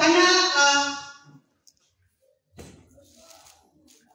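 A woman's singing voice through a microphone and PA, holding notes, dies away about a second in. A pause follows, broken by a faint knock near the middle.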